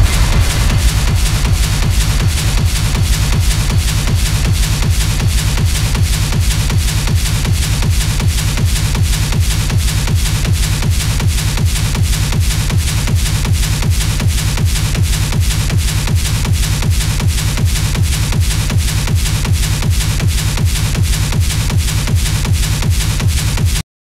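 Hard techno track in a stripped-back section: a fast, steady, driving kick drum with bass and hi-hat percussion, the fuller melodic layers having dropped away. The music cuts off right at the very end.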